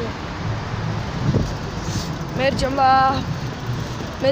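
Steady low background noise of a city street at night, picked up on a phone microphone. About two and a half seconds in, a voice calls out one long held note.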